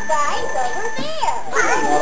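A toddler's high-pitched voice babbling and vocalizing in gliding, sing-song tones.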